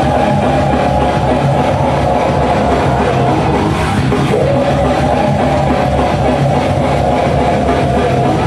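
A rock band playing loudly live, with a long high note held over it that slides up into pitch at the start and again about four seconds in.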